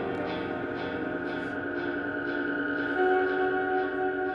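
Improvised experimental music: a droning chord of long held tones from trumpet, saxophone and electric guitars, with faint picked guitar notes under it. A new held note comes in louder about three seconds in.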